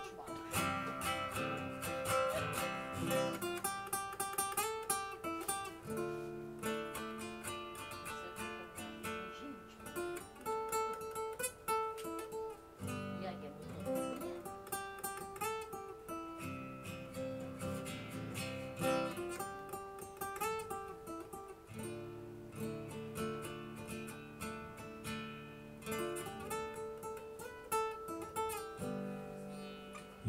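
Solo acoustic guitar playing the instrumental introduction to a song, strummed and picked chords changing every few seconds.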